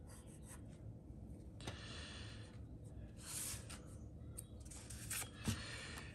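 Faint pencil scratching on card as a line is drawn, in a few short strokes. A few light clicks near the end.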